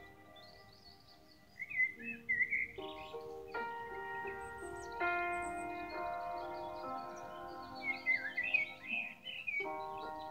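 Soft instrumental background music of held keyboard-like chords, with bird chirps over it in two flurries, about two seconds in and again near the end. The first second or so is quiet before the chords come in.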